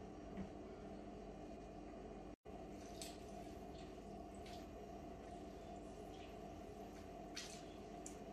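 Faint soft squelching and dripping as a lemon is squeezed by hand through a mesh strainer into a bowl, a few short wet sounds over a steady low hum.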